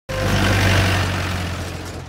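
Mahindra jeep's engine running as the jeep drives close past, a steady low hum with a rush of noise over it, loudest in the first second and fading away after.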